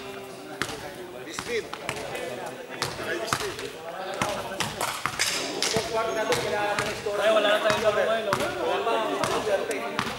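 Basketball bouncing on a sports-hall floor, a series of irregular thuds with hall echo, amid overlapping voices.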